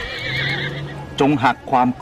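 A horse whinnying: one high, wavering call that trails off in the first second. A man's voice follows.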